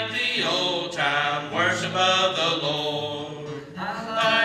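Male vocal trio singing a gospel hymn in harmony.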